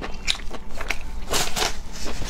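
Close-miked chewing: a string of short crackling mouth clicks, several a second, with a louder crackling burst a little past the middle.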